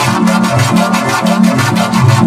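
Sound track run through a 'chorded in G major' pitch effect, turning it into stacked, synthesizer-like chords that change in short steps, with a fast, even pulse running through it.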